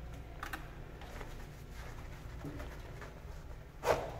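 A urine stream splashing into a porcelain urinal over a steady low room hum, with a sharp loud knock just before the end.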